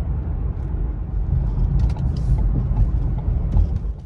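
Car cabin noise while driving: a steady low rumble of engine and tyres from inside the car, with a few faint knocks around the middle.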